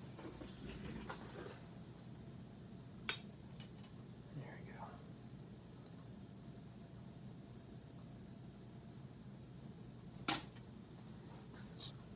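Quiet handling of a small metal tuna can, with a few sharp clicks or taps: two close together about three seconds in and a louder one near the end, over a low steady hum.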